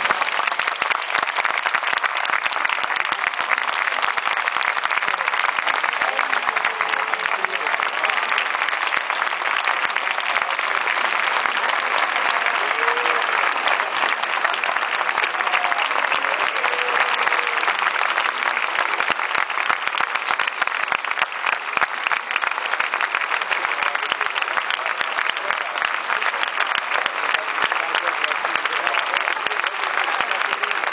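A large audience applauding steadily at the end of an orchestral and choral piece, with a few voices calling out from the crowd.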